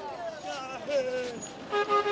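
A short, steady toot of an ambulance van's horn near the end, over the voices of a crowd.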